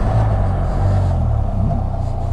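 Can-Am Spyder RT-S roadster's engine running at low revs while slowing at a stop sign and turning. The steady low engine note dips briefly in the second half.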